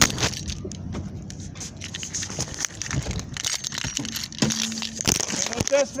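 Handling noise on a phone microphone: rustling and a string of sharp clicks and knocks as the phone is moved about.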